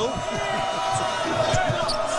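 A basketball being dribbled on a hardwood court, a quick run of repeated bounces, over the steady murmur of an arena crowd.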